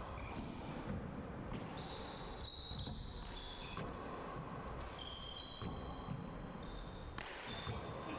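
Handball rally on an indoor hardwood court: a rubber handball struck by gloved hands and bouncing off the walls and floor, heard as a few sharp knocks. There are also short high squeaks of sneakers on the wooden floor.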